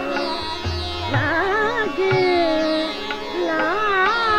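Female Hindustani classical vocalist singing a Pahari dadra in raag Khamaj: gliding, ornamented phrases over a steady drone, with a few low drum strokes underneath.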